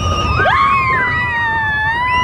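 Riders on a mine-train roller coaster screaming, several long high cries overlapping, one rising sharply about half a second in and then held, over a low rumble from the moving train.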